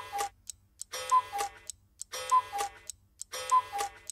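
Cartoon clock striking five: a two-note falling chime repeats about every 1.2 s, four times here, with faint ticks between the strikes.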